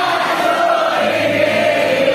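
A small group of young women singing together, holding one long note that slides slowly down, accompanied by an acoustic guitar.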